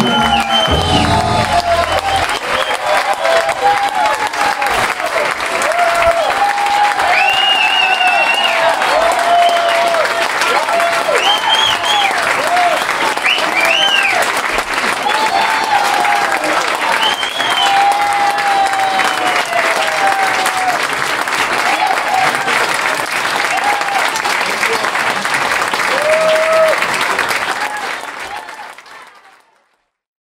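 A club audience applauds and cheers with whoops and shouts after the band's final chord rings out in the first two seconds. The applause fades out near the end.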